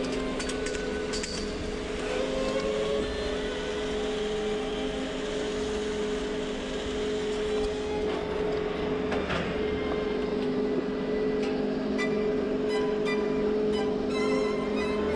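T-bar ski lift machinery at the loading station running with a steady hum, broken by scattered brief clicks.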